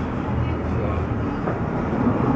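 A steady low rumble of outdoor background noise, even and unchanging.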